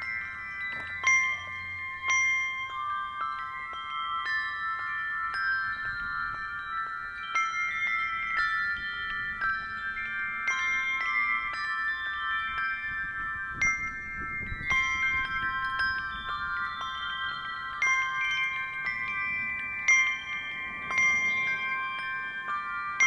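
Handbell duet: brass handbells rung two to a hand, their struck notes sounding several at once and ringing on, overlapping from one strike to the next.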